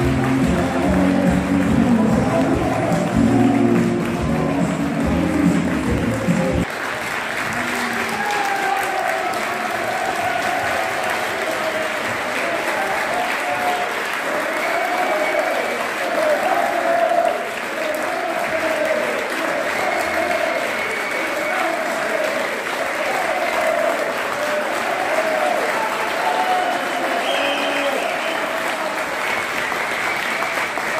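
Football crowd in a stadium stand clapping. Music plays under the applause for the first several seconds and cuts off suddenly. After that, steady applause continues with voices over it.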